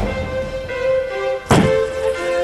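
Background music with a single sharp thud about one and a half seconds in: a Boulder Buster impulse tool firing into a water-filled hole in a boulder, breaking the rock under a covering mat.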